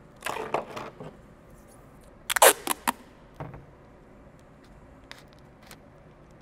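Thin PET plastic strips crinkling as they are handled, then clear packing tape pulled off its roll with a short loud rip about two and a half seconds in, followed by a few faint clicks.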